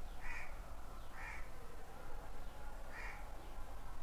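A bird calling three times outdoors: short calls, the first two about a second apart and the third about two seconds later.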